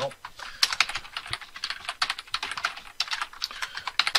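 Fast typing on a computer keyboard: a dense, irregular run of key clicks.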